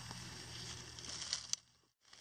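Faint outdoor background with a few small clicks and crackles about a second in, then dead silence from about a second and a half in, where the recording cuts out.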